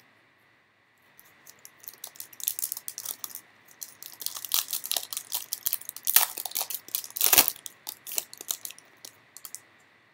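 Foil wrapper of a trading-card pack being torn open and crinkled: a run of crackles and crunches that starts about a second in and stops shortly before the end.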